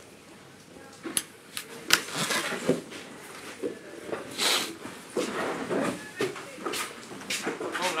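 Indistinct talking in a room, with a few light knocks and clicks.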